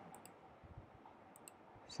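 Faint computer mouse clicks, two quick pairs: one just after the start and one about a second and a half in, as a menu is opened on screen.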